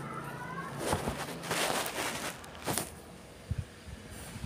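A small puppy playing on a fabric couch: a brief high-pitched whine in the first half-second, then a few short bursts of rustling and scuffling against the cushions.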